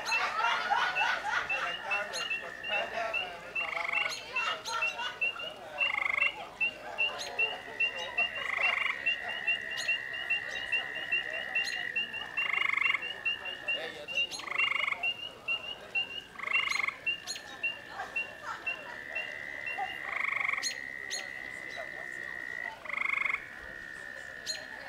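A chorus of frogs calling from a pond. A long, steady high trill runs for several seconds at a time with short breaks, over a quick run of short high notes, and a short call repeats every two seconds or so.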